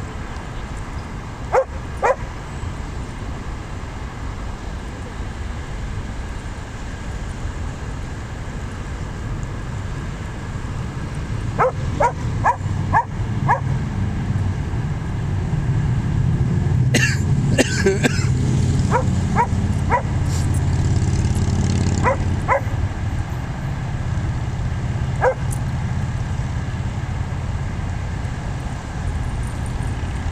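Dogs barking in short single barks, a couple near the start and a run of them around the middle, over a steady low rumble.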